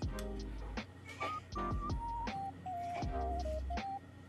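Music with a single-line melody stepping up and down over bass notes and a beat.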